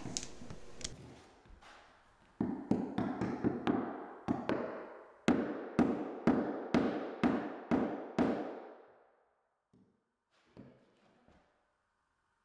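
Claw hammer striking nails into a plywood subfloor, driving raised nails that popped up after the subfloor was screwed down back flush. About a dozen quick blows come first, then steadier ones about two a second, each ringing briefly. They stop a little past the middle, and a few faint taps follow.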